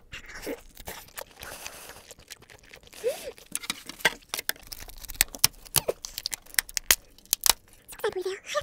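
Close-miked chewing of a mouthful of lobster tail meat: a stream of short, sharp wet mouth clicks and smacks that grow denser in the second half.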